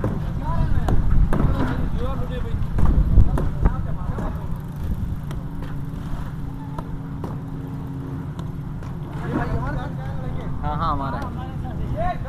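People's voices, too unclear to make out, over a constant low rumble. For a few seconds in the middle, a steady droning tone sounds alongside.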